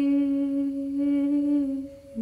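A woman humming one long held note over a steady ringing drone; the hum wavers slightly and fades out near the end.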